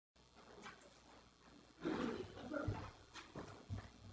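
Faint sound from a person at a microphone: a brief rough vocal noise about two seconds in, and two short low bumps on the microphone near the end.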